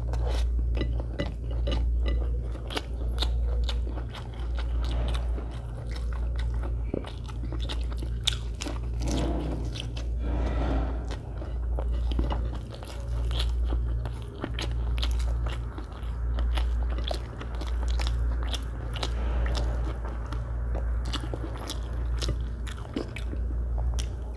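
Close-miked chewing of mouthfuls of rice and fried egg, with many small wet mouth clicks and smacks over a low thud that comes and goes about once a second.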